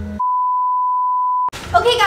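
A single steady electronic beep at about 1 kHz, lasting just over a second, with all other sound cut out beneath it: an edited-in censor bleep.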